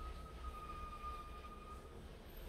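Quiet room tone: a low hum with a faint, steady high-pitched tone that stops shortly before the end.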